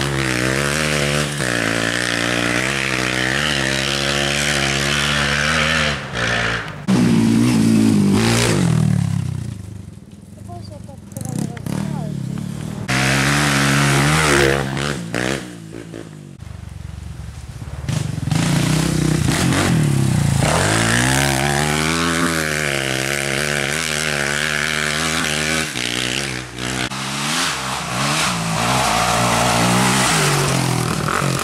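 Enduro dirt bikes riding past one after another, their engines revving up and down in pitch through the gears. The engine sound fades to a quieter lull about ten seconds in and again around sixteen seconds, then builds again as the next bikes come by.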